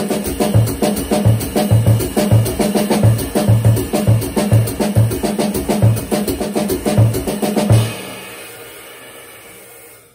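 Jazz drum kit playing a syncopation exercise at a brisk tempo: a steady cymbal pattern over eighth notes on the bass drum, quarter notes on the hi-hat and left-hand fills on snare and toms. The playing stops about 8 seconds in and the cymbals ring out.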